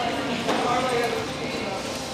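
Indistinct chatter of several people talking in a cafeteria, with a couple of light knocks or clatters.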